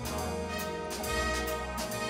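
Jazz big band playing: brass and saxophones sounding sustained chords over walking upright bass, with drum-kit and cymbal hits.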